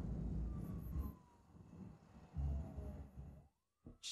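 Low rumble with a faint distant siren whose pitch slides slowly downward, both fading away near the end.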